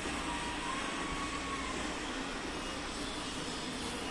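Steady outdoor background noise, an even rush with no clear strokes or rhythm, with a faint thin whistle that rises and falls in the first two seconds.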